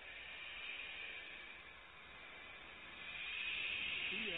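Barn owl owlets giving their rasping hiss, the 'snoring' call of nestlings, which grows louder about three seconds in.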